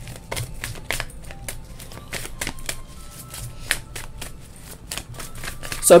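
A deck of tarot cards being shuffled by hand: a quick, irregular patter of card edges clicking and riffling.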